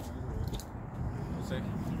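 Outdoor urban background noise: a low, steady rumble.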